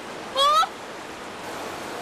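A boy's short, high cry of alarm about half a second in, over the steady rush of stream water.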